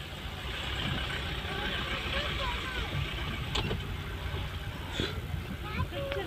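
Inside a Toyota Innova's cabin while driving in the rain: a steady low engine and road rumble with an even hiss from the rain and wet road, and two faint clicks about three and a half and five seconds in.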